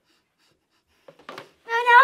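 Near silence for about a second, then a few faint short sounds, and near the end a child's loud drawn-out vocal sound held on one steady pitch.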